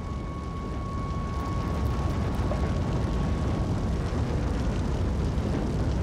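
A low, steady rumbling drone of sound design that swells slightly, with a faint high held tone that fades out a little past halfway.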